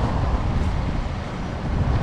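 Wind buffeting an action camera's microphone: a steady low rumble with hiss.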